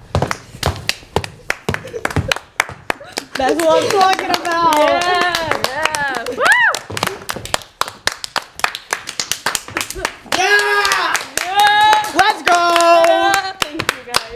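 A small group of people clapping, fast and uneven. Excited voices call out and whoop over the clapping in two stretches, a few seconds in and again near the end.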